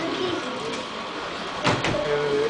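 Indistinct murmur and clatter of a crowded room, with two sharp knocks close together near the end.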